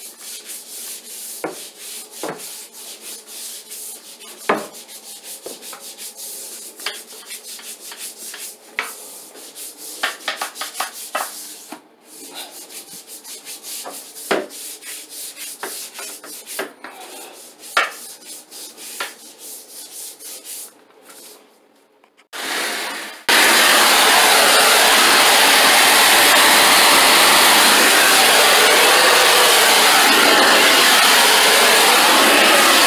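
Long-handled scrub brush scrubbing wet bathroom floor tile and grout, with irregular scrapes and knocks. About 23 seconds in a cleaning machine starts up with a loud steady rush that covers everything, as a handheld tile-cleaning tool is run over the floor.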